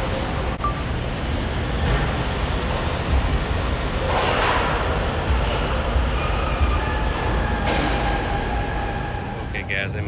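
Steady background noise of a large, busy exhibition hall: a low rumble under indistinct murmuring voices.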